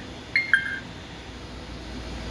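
FlySky Noble NB4 RC transmitter giving two short button beeps as its touchscreen keys are tapped. The second beep is lower in pitch and a little longer than the first.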